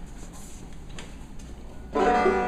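Faint rustling and a few light knocks as a player sits down and settles an open-back banjo, over a low room hum. The banjo's first notes start abruptly right at the end.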